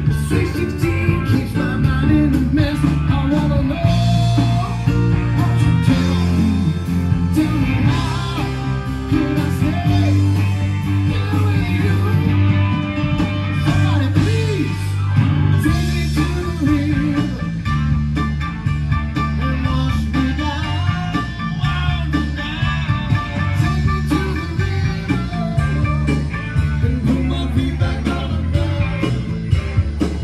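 Live band playing a song through PA speakers, with a singer and a strong, steady bass line.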